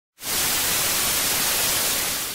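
TV static sound effect: a steady hiss of white noise that cuts in abruptly just after the start.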